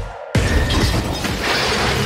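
A hard house track's four-on-the-floor kick drum stops, and about a third of a second in a loud, sustained, shattering crash effect takes over: the opening of an electronic logo sting.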